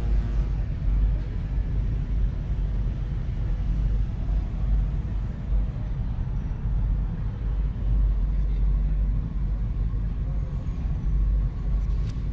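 Sci-fi space station ambience: a deep, steady low rumble of machinery with a faint murmur of voices in the background.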